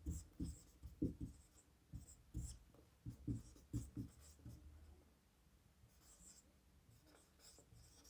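Marker pen writing on a whiteboard: a quick string of short, faint strokes that stop about halfway through.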